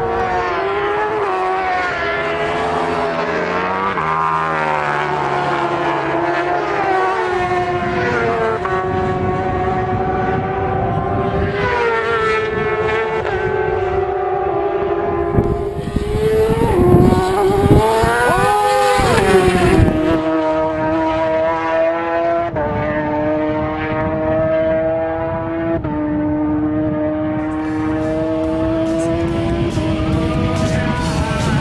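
Racing motorcycles running flat out, their engine notes held high. About halfway through, one bike passes close and loud, its pitch rising and then falling as it goes by. Later a held engine note steps down in pitch at each upshift.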